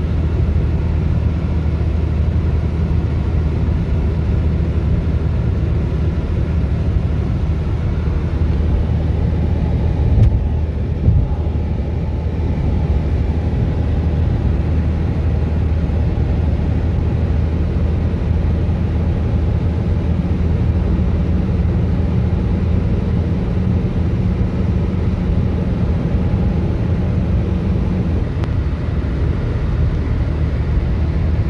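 Steady road and engine drone heard inside a moving car's cabin on a highway: a low hum with tyre noise, and two brief thumps about ten and eleven seconds in.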